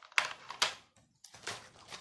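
Plastic cassette cases clacking as they are handled and set down on a wooden table: two sharp clacks in the first second, then a run of lighter clicks.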